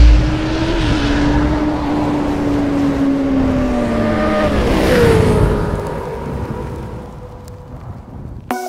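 Motorcycle engine sound effect: a loud low hit, then the engine running at high revs on one steady note. About four seconds in its pitch drops as it passes by, and it fades away.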